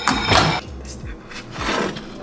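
Spatula scraping against a nonstick frying pan as fried food is lifted out: two short scrapes, one at the start and one shortly before the end.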